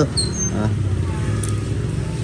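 Steady low rumble of a motor vehicle engine running, with no change in pitch.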